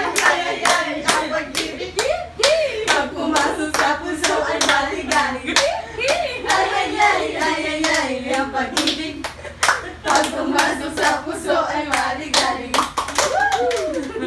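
A group of women clapping their hands together in a steady rhythm, a few claps a second, with their voices singing along over the claps.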